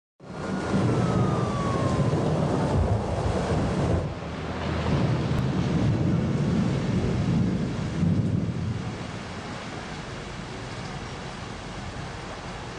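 A deep rolling rumble over a steady hiss, sounding like a thunderstorm. About nine seconds in it drops away to the hiss alone. A faint tone glides downward in the first two seconds.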